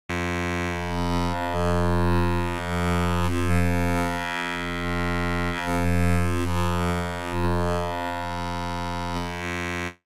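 A single low synthesizer note held on UVI Falcon's wavetable oscillator. Its timbre shifts smoothly back and forth as the wave index is swept through the wavetable, with index and octave smoothing switched on. The note starts and cuts off abruptly.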